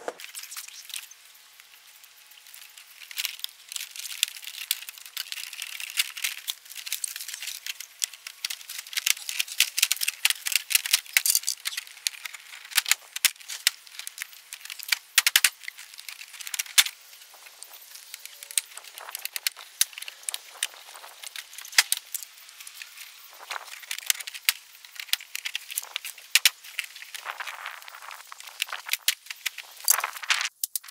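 Vinyl siding panel being worked up into the J-channel by hand: a long run of plastic clicks, crackles and rattles as the panel flexes and scrapes into place.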